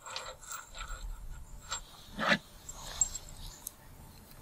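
Small screws and hardware being handled: light clicks and rubbing, with one louder knock a little past halfway.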